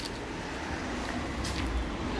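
Outdoor street ambience: a steady low rumble of road traffic, with a click right at the start and a brief hiss about one and a half seconds in.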